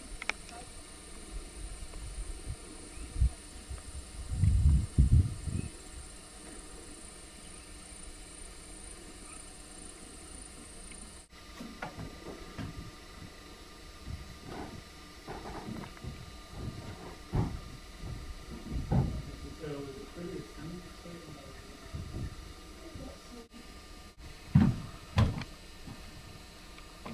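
Faint, indistinct voices in the background, with a cluster of low thumps about four to six seconds in.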